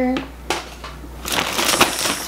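Plastic shopping bag and packaging rustling and crinkling as items are handled and pulled from the bag, with a single click about half a second in and a dense stretch of crinkling in the second half.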